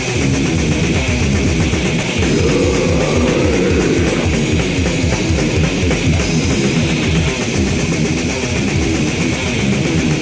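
Death metal band playing the opening riff of a song: heavily distorted electric guitars and bass over drums, driving along at a fast, even pulse with no vocals yet.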